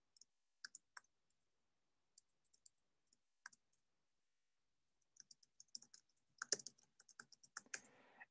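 Faint keystrokes on a computer keyboard: a few scattered key presses, then a quicker run of typing in the last few seconds.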